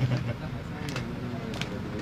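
A deck of playing cards handled in the hands, with a couple of light clicks of the cards about a second and a second and a half in, over a low room hum and the end of a spoken word at the start.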